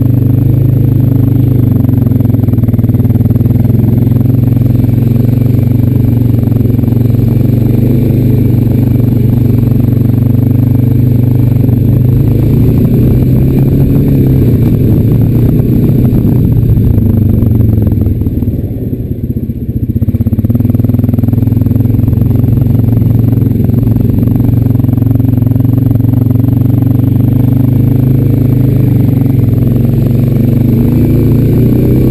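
Honda Rancher 420 ATV's single-cylinder four-stroke engine running steadily as the quad is ridden through snow, easing off for a couple of seconds about two-thirds of the way through before picking up again.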